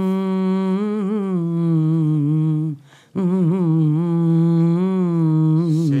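A woman humming a song's melody into a handheld microphone, in held, gently wavering notes, with a short break for breath about three seconds in.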